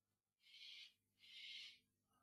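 Near silence: faint room tone, with two short, faint hisses about a second apart.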